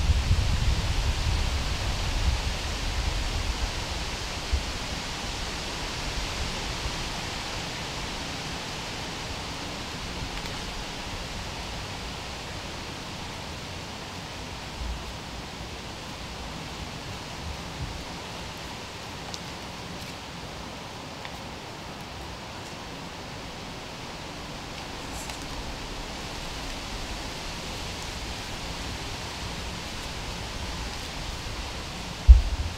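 Steady rushing of wind through the trees, with a low rumble of wind on the microphone during the first few seconds that dies down; a few faint ticks later on.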